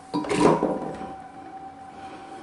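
Radishes dropped into a blender jar: one short clatter about a quarter second in, fading away over the next second.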